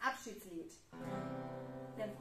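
An acoustic guitar chord strummed about a second in and left ringing steadily.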